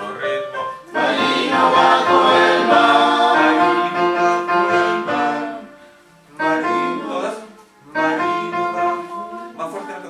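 Choir singing in Spanish, one long full phrase near the start and then two shorter phrases with short breaks between them.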